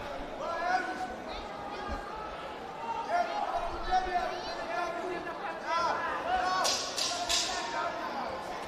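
Men shouting short calls across a large hall, with scattered low thuds. Two sharp smacks come about seven seconds in.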